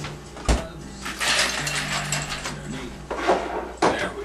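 Ice being fetched and handled: a single thump, then about a second of ice cubes rattling and clattering, then two sharp knocks near the end.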